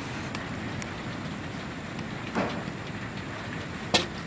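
Steady rain falling, with a short knock about two and a half seconds in and a sharp click near the end.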